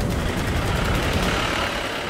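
Police jeep driving past as it pulls away: engine and tyre noise, loud and steady.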